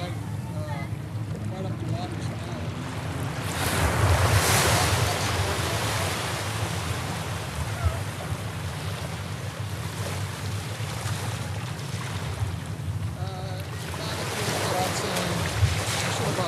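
Ocean surf washing up a sandy beach, with wind rumbling on the microphone; a wave surges loudest about four seconds in and another near the end.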